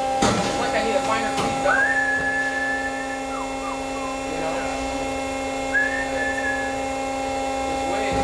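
Industrial band saw running with a steady hum of several tones. A high, held whistle sounds twice, starting about two seconds in and again near six seconds, each lasting about a second; a couple of sharp clicks come at the start.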